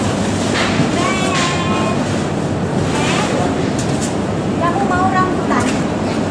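Steady background noise of a shop interior, with a child's high-pitched voice calling out briefly twice: about a second in, and again near the end.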